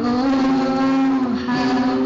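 A young singer holds a long sung note into a microphone, with a brief break in the note about one and a half seconds in, over acoustic guitar accompaniment.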